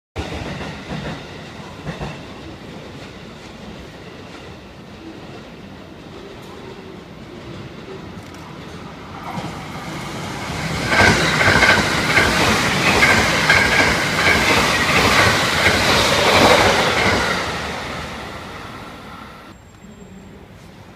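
JR West 683 series electric train passing at high speed: the wheel and rail noise builds from about nine seconds in, is loud for around six seconds with a steady high whine over the clatter of the cars going by, then fades away.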